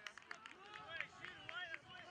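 Distant, overlapping shouts and calls from players and sideline spectators across an outdoor soccer field, with a few sharp knocks mixed in.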